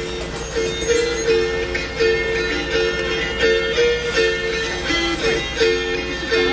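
Pskov wing-shaped gusli played, strummed in a steady rhythm with the strings ringing on.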